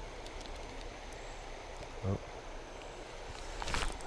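Faint steady rush of a shallow creek flowing, with a few light clicks; near the end a short burst of rustling noise.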